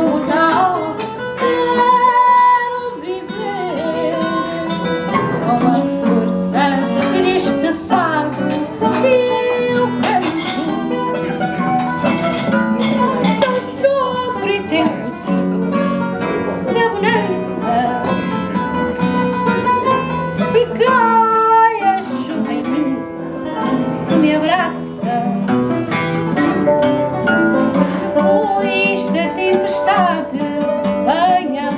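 A woman singing fado to acoustic guitar accompaniment of classical guitar and viola de fado, plucked notes running steadily under her voice.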